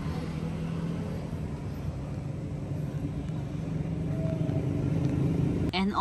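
Steady low rumble of a motor vehicle engine running, growing slightly louder toward the end, with a click just before the end.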